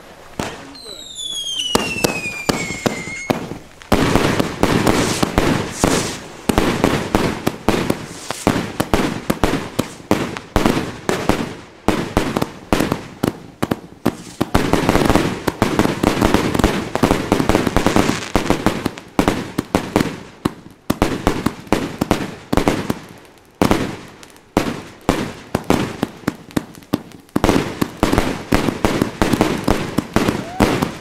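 Funke Yggdrasil 100-shot fireworks battery firing: rapid launch thumps and crackling bursts, many per second, set off about four seconds in and running on with only a brief lull. A falling whistle sounds in the first few seconds.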